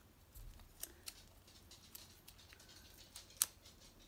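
Small champagne-coloured card-making gems being handled and pressed onto a card: a few faint clicks and ticks, the sharpest about three and a half seconds in.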